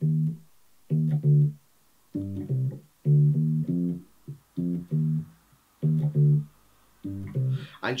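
Unaccompanied four-string electric bass playing a short C-minor riff (C, D, E flat, F with a G leading back to C), plucked as short separated notes in groups of two or three, about one group a second, with silences between.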